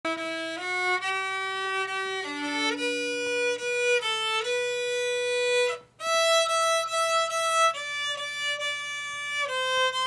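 Solo violin playing a slow melody of held notes, one note at a time, with a brief break about six seconds in.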